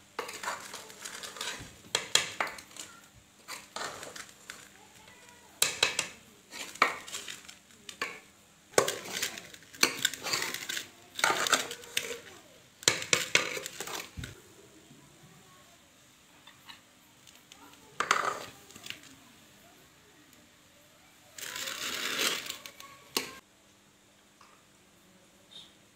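Steel ladle scraping and clinking against an aluminium cooking pot as cooked rice is scooped out, a dense run of knocks and scrapes through the first half, then sparser. A noisy burst of about two seconds near the end.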